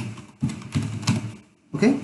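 A man speaking in short phrases over the clicking of a computer keyboard as text is typed.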